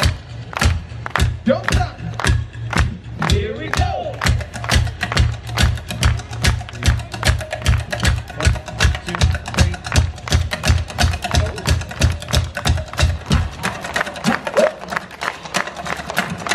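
Street percussionists beating a wooden plank on sawhorses with sticks in a driving, even rhythm that packs in faster strokes after the first few seconds, over a thumping bass backing beat that stops near the end. A few short shouts come in the first few seconds.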